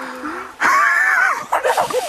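A drawn-out lower vocal cry trails off, then about half a second in a loud, high-pitched shriek of alarm rises and wavers in pitch, followed by shorter cries.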